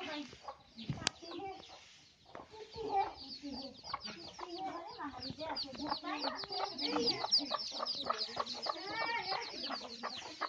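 Chicks peeping in rapid, busy high chirps, thickening after the first few seconds, with a hen clucking lower down.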